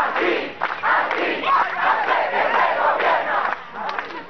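A large crowd shouting together, many voices at once, dying down near the end.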